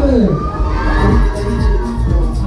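Riders on a spinning fairground thrill ride screaming and cheering, with a few high shouts that rise in pitch.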